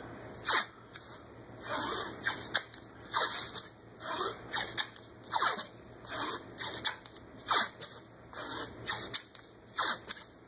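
White athletic tape being pulled off the roll and torn in short rasping rips, about one a second, as closing strips are laid around a taped ankle.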